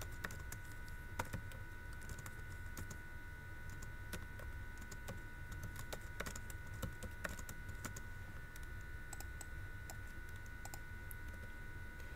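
Faint computer keyboard typing: scattered, irregular keystrokes over a steady low hum.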